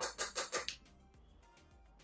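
A makeup brush swirled in a pan of pressed matte blush powder: a quick run of four or five scratchy bristle strokes in the first half second or so, then it stops.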